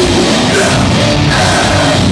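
Metalcore band playing live and loud through the venue's PA: electric guitars and drums in a dense, unbroken wall of sound, with the vocalist singing or screaming over it.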